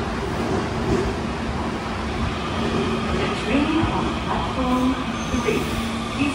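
Osaka Metro 66 series subway train running into an underground station platform and slowing, a steady rumble with a low hum.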